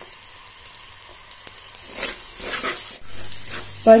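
Beans thoran sizzling in a clay pot, stirred with a wooden spatula. The scraping and sizzling grow louder about two seconds in.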